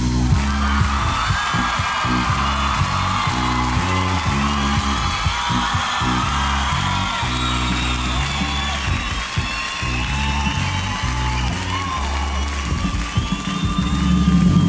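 Rock band playing live, an instrumental passage with a bass guitar line stepping through notes over the drum kit, while the crowd whoops and screams over the music.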